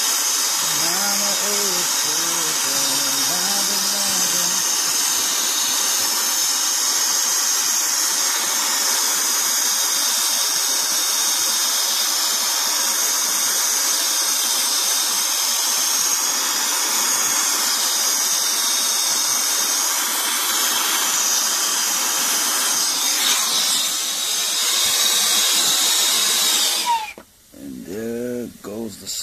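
Brazing torch flame hissing steadily as it heats the brazed copper refrigerant line on a compressor stub to unsweat the joint. The hiss stops abruptly near the end.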